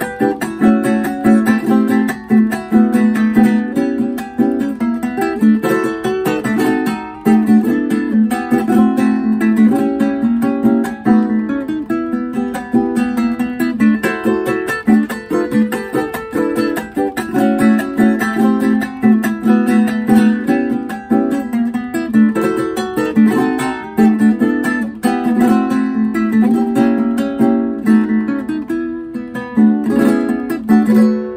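A small acoustic plucked string instrument played solo, fingerpicked: a quick melody of single notes over lower bass notes in a lively merengue rhythm.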